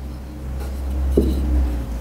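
Paper rustling as the pages of a Bible are handled on a lectern, over a low rumble picked up by the lectern microphone, with one small tap about a second in.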